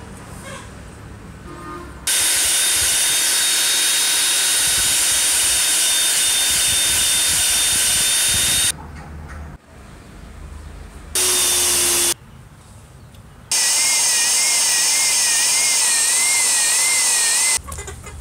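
Disc sander with a sanding pad running in three loud, steady bursts that start and stop abruptly, the longest about six seconds. A high whine runs through each, wavering in pitch during the last burst.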